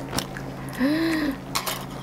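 A short hummed 'mm' about a second in. There are a few light clicks of metal chopsticks and a spoon around it, and a steady low hum underneath.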